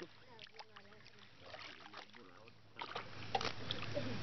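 Pond water sloshing and splashing as a man wades waist-deep and works a fish net through the water. It starts louder about three seconds in, with faint voices talking before it.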